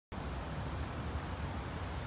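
Steady outdoor background noise on a wet, rainy day: a low rumble under a soft, even hiss.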